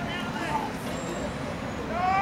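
Players' faint shouted calls across a football pitch, heard mostly near the start, over a steady low outdoor rumble.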